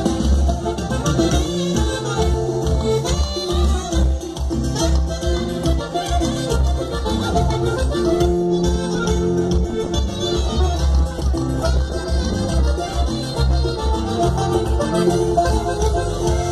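Mexican regional band music playing a lively zapateado dance tune, with a strong, steady bass beat.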